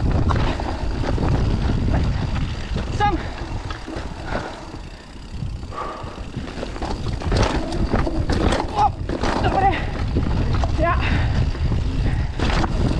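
Mountain bike descending a dirt forest trail: a steady rumble of tyres over dirt and roots with the bike rattling over bumps, easing off briefly in the middle. A few short high squeaks come through now and then.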